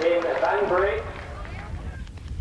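A voice for about the first second, then a low, steady rumble.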